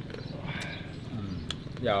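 Chewing on crunchy, deboned chicken feet pickled with lemongrass and kumquat, with a few sharp crunches about half a second apart.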